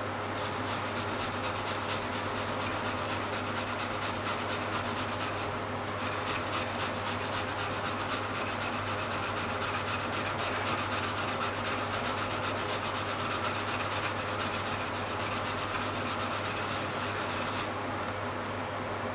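Peeled Japanese mountain yam (yamaimo) being grated on a plastic grater: quick, regular back-and-forth rasping strokes, with a brief pause about five and a half seconds in, stopping just before the end.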